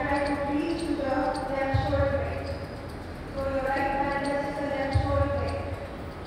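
Speech: a voice giving spoken cues, with a dull low thump about two seconds in and another about five seconds in.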